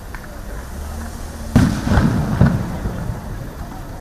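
Three explosive bangs in quick succession, the first about one and a half seconds in and the loudest, each leaving a low rumbling tail.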